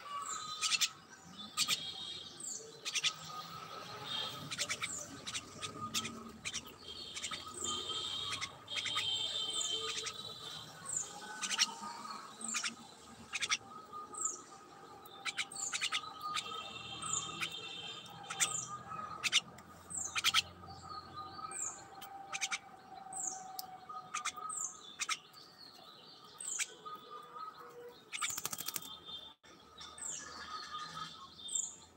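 Birds chirping: a steady run of short, high chirps that fall in pitch, about one a second, mixed with sharp clicking notes.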